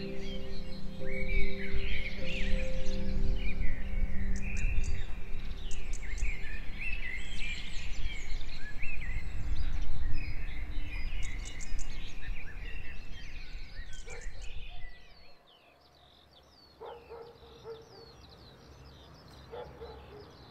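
A dense chorus of birdsong, many overlapping chirps and whistles, over a low steady musical drone; both fade out sharply about fifteen seconds in, leaving a few faint calls.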